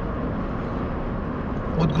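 Steady road noise heard inside the cabin of a car being driven: an even rushing sound that stays at one level.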